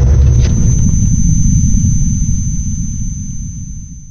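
Sound design of a logo intro sting: a deep rumble that slowly fades away, under a thin steady high tone.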